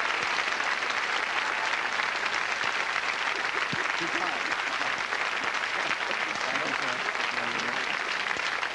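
Studio audience applauding steadily as a guest is welcomed, with faint voices mixed in.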